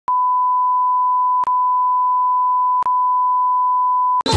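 A loud, continuous electronic beep at one steady pitch, broken by two brief clicks about a second and a half and three seconds in.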